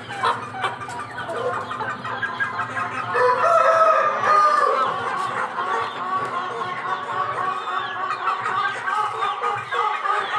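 Aseel chickens calling: a steady stream of short peeps and clucks from the chicks and hens, with a louder, longer drawn-out call about three to five seconds in.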